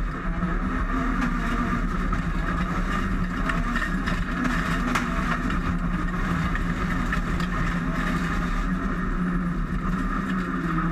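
Lancia Delta Integrale rallycross car's turbocharged four-cylinder engine running hard at fairly steady revs, heard from inside the stripped cabin, with rough road and tyre noise underneath.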